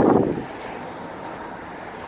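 Wind on the microphone, gusting in the first half second and then settling into a steady, low hiss.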